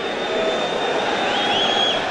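Steady crowd noise from a football stadium crowd, an even din with no single event standing out.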